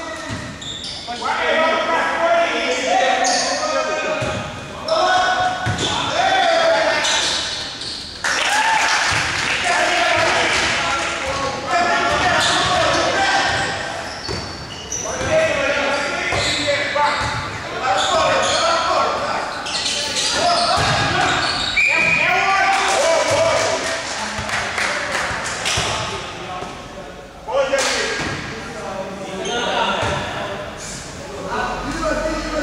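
Voices calling and shouting across a large, echoing sports hall during a basketball game, with a basketball being dribbled on the court.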